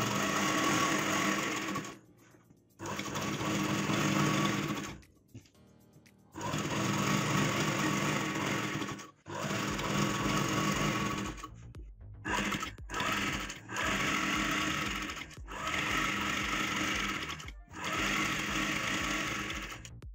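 Usha sewing machine stitching curtain tape onto curtain fabric in runs of two to three seconds, stopping briefly between them. In the second half the runs become shorter and come closer together.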